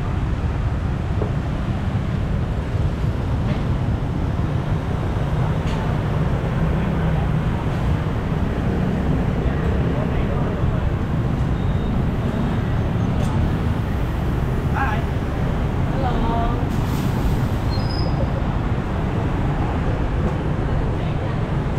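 Street traffic of motorbikes and cars running steadily close by, a dense low engine rumble.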